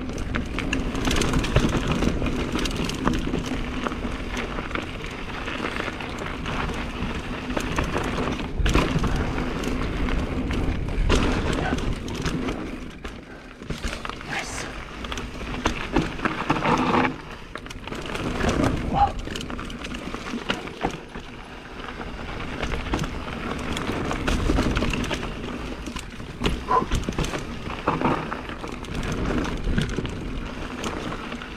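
Mountain bike rolling down a dirt forest singletrack, the tyres rumbling over dirt and roots, with frequent knocks and rattles from the bike over bumps.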